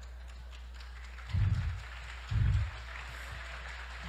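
Faint audience applause, with two dull low thumps about a second and a half and two and a half seconds in.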